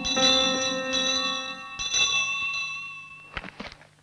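Bell chimes struck over and over, about one strike a second, each ringing on, then fading out about three seconds in. A few light knocks follow near the end.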